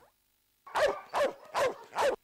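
A dog barking four times in a quick, even series, a little under half a second apart, starting about half a second in after a brief silence.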